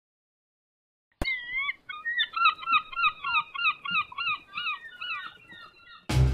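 Gull calls, cutting in suddenly about a second in: a few long wavering cries, then a rapid run of short calls that fades toward the end.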